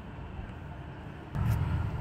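Quiet room background, then from about one and a half seconds in a low rumble with a couple of soft knocks: a hand handling the phone that is recording.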